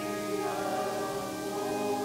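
Voices singing a hymn together in long held notes, the chord changing about half a second in.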